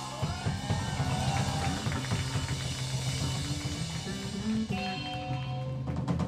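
Live rock band playing, with a drum kit, bass guitar, electric guitar and keyboard: steady drum hits under held bass notes.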